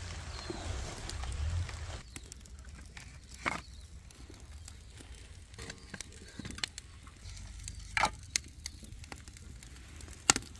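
Split sticks of wood being laid by hand over a small kindling fire in a steel fire pit: a few separate clicks and knocks of wood, after a hissing noise that stops about two seconds in.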